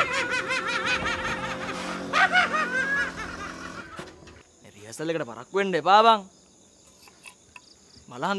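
Several voices shouting and laughing, then two loud, drawn-out vocal cries about five and six seconds in. Crickets chirp through the quieter stretch near the end.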